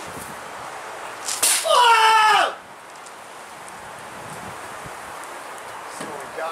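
A man's loud, wordless shout, about a second long and falling in pitch at the end, as he thrusts a long spear overarm.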